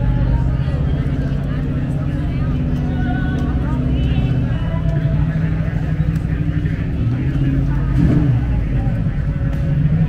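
Classic car engines running at low speed close by, a steady low hum that shifts in pitch about halfway through and swells briefly near the end, with voices of a crowd faintly behind.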